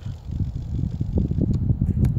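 Wind buffeting the microphone: an irregular low rumble that grows louder about half a second in.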